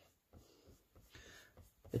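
Faint, soft rubbing of a Faber-Castell kneaded eraser passed lightly over sketchbook paper, lifting pencil guide lines.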